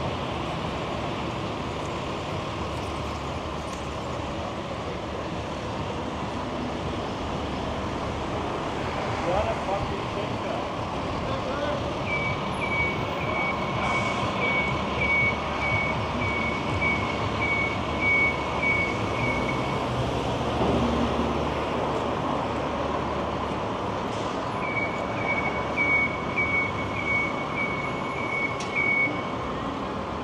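Steady downtown street traffic. An electronic warning beeper sounds in two runs of evenly spaced high beeps, about two a second: one through the middle, a second near the end.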